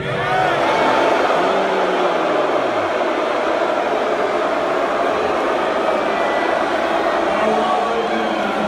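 Large rally crowd in a big hall shouting at once. It is a dense wall of voices that swells suddenly at the start and holds steady, with single voices rising above it now and then.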